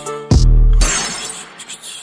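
Transition effect in a Brazilian funk DJ mix. The beat drops out, a short bass hit lands about a third of a second in, and then a crashing burst of noise, loudest in the treble, fades away over about a second before the next track comes in.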